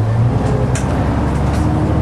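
Vintage bus engine running steadily, its low note dropping about half a second in, with a couple of brief high rattles.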